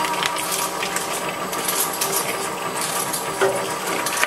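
Twin-shaft shredder running with a steady whine as its steel cutters crack and tear a hollow plastic ball, with irregular sharp cracks and clatter of plastic on the turning blades. A heavier crack comes a little before the end.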